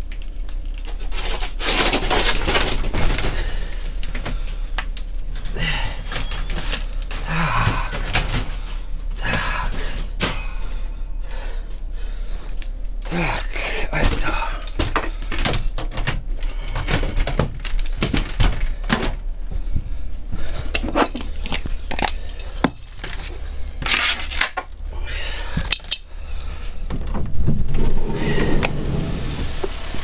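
Irregular clatter and knocks of metal cage fittings in a van's animal compartment, with handling noise on a body-worn camera.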